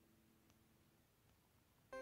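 Near silence, with soft music of held notes starting just at the very end.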